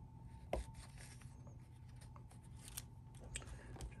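Faint rubbing and rustling of leather pieces being pressed down by hand onto double-sided tape on a cutting mat, with a light tap about half a second in and a few small ticks, over a low steady hum.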